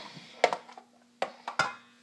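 A spoon tapping against a plastic measuring jug while stirring a juice dressing: about three sharp taps.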